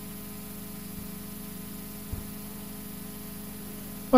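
Steady electrical hum with a faint hiss from the lecture's microphone and sound system, with one faint low thump about two seconds in.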